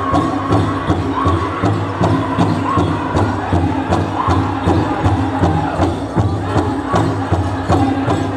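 Powwow drum group singing a grass dance song in high voices over a big drum struck in a steady, even beat.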